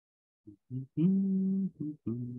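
A man humming a tune: a few short notes, then one longer held note about a second in, then more short notes.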